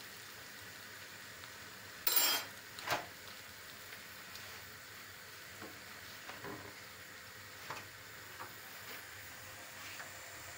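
Gözleme (folded yufka flatbread) sizzling in a hot pan with a steady faint hiss. There is a brief loud clatter about two seconds in and a lighter one a second later.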